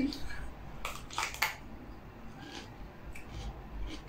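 Crunching of a bite into a raw green bell pepper stuffed with cream cheese: three sharp crunches about a second in, then a few softer crunches of chewing.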